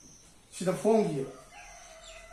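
A rooster crowing once, a loud pitched call of a few linked notes lasting under a second.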